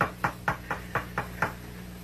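Knocking on a door to be let in: a quick run of about seven knocks, roughly four a second, stopping about a second and a half in.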